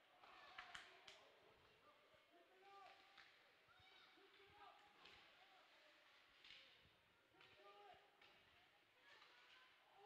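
Near silence: faint ice-rink ambience with distant voices calling and a few faint knocks, several of them about a second in.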